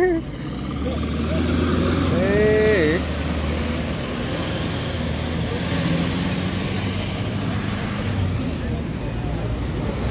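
Mitsubishi Fuso truck's engine running with a low rumble, strongest in the first four seconds, over steady traffic noise. A person's voice calls out once, briefly, a little over two seconds in.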